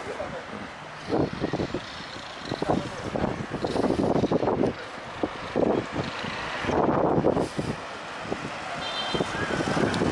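Roadside street traffic with vehicles going by, in uneven surges with knocks and rumble from a handheld microphone, and indistinct voices in the background.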